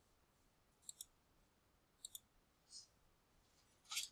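Faint computer mouse clicks in a quiet room: two quick double-clicks about a second apart, then a single softer click.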